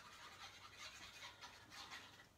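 Faint scratchy rubbing of a small hand-held white applicator against a die-cut paper shape on card.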